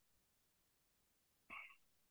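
Near silence on a video call's audio, broken by one brief, faint sound about one and a half seconds in.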